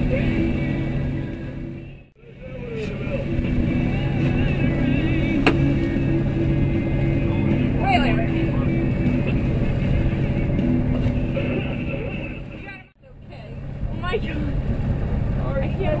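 Twin outboard motors running steadily at trolling speed, a low even drone. The sound briefly drops out about two seconds in and again near the end.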